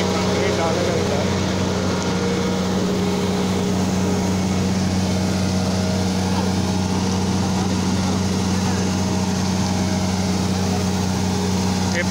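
Concrete mixer truck's diesel engine running steadily with an even low drone while the truck discharges concrete down its chute.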